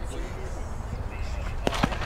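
Faint background voices and chatter, with two sharp clicks about a fifth of a second apart near the end.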